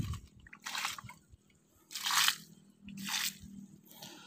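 Three crunching footsteps on dry leaf litter and crumbly soil, about a second apart.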